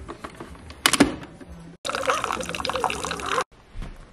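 A sharp click about a second in, then a Keurig single-serve coffee maker brewing, a stream of coffee pouring steadily into a mug. The sound breaks off abruptly twice.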